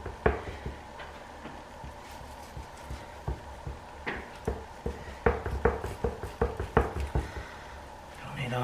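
Kitchen knife trimming fat from a raw brisket on a wooden cutting board: a run of short clicks and knocks, sparse at first and coming two or three a second in the second half.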